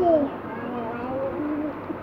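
A small child's wordless vocalizing: a falling coo followed by a soft, wavering drawn-out hum.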